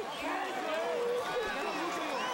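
Boxing arena crowd and people in the ring: many voices shouting and talking at once, in a steady din after a knockout.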